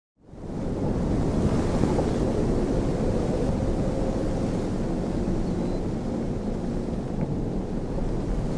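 A steady rushing noise, like surf or wind, fading in quickly at the start and holding at an even level.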